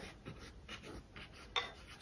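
Faint, soft scratching of a small paintbrush stroking acrylic paint onto canvas: several short brushstrokes, with a slightly louder one near the end.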